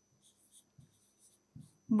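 A pen writing on an interactive whiteboard screen: a few short, faint scratching strokes in the first second or so. Near the end a woman starts to speak.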